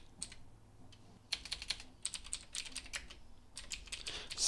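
Typing on a computer keyboard: a few scattered keystrokes, then a quick, irregular run of keys from just over a second in.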